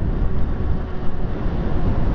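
Wind rumbling on the camera microphone of an electric bike riding along, a steady low noise with no distinct engine note.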